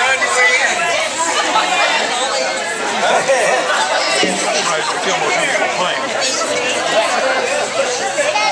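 Many people talking at once: the steady chatter of a crowd of party guests.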